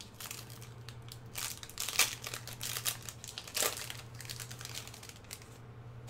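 Booster-pack wrapper being crinkled and torn open in irregular crackly bursts, the sharpest crackle about two seconds in, dying down after about four seconds.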